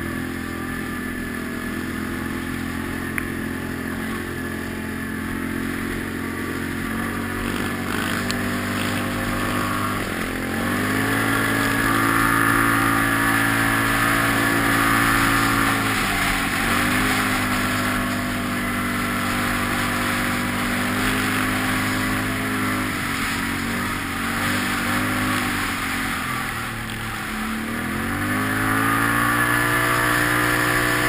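Quad bike (ATV) engine running under way on a dirt track. The revs climb about ten seconds in and hold, ease off briefly around the middle, dip again near the end, then climb once more.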